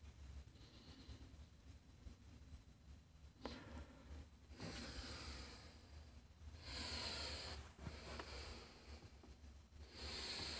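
A few soft, hissy breaths close to the microphone in a quiet room, the loudest about seven seconds in, with a faint click a little earlier.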